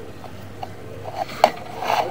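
Sewer inspection camera and its push cable knocking and scraping as they are worked through the pipe: a few light clicks, one sharp knock about halfway, then a short scraping rustle near the end.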